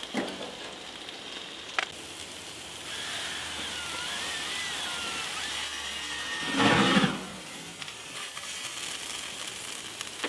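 Chicken skewers sizzling steadily on a gas grill, with a brief loud rush of flame as the grill flares up about six and a half seconds in.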